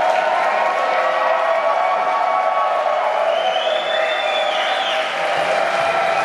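Large concert crowd cheering and applauding steadily, with shouts over the clapping.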